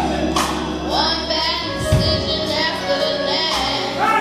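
A young boy singing a gospel song into a microphone, long held, bending notes, over a live church band: held bass notes and a cymbal crash under a second in, with another hit near two seconds.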